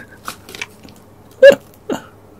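Two short vocal sounds from a man close to the microphone: a loud, sharp one about a second and a half in and a softer one just before the end, with a few faint clicks earlier.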